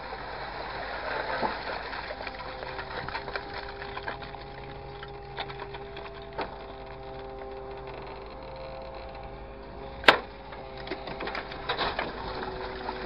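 Grapple loader's engine and hydraulics running under load as the orange-peel grapple lifts and swings a load of waste, a steady hum with held tones that shift in pitch. Scattered small clicks and one sharp knock about ten seconds in.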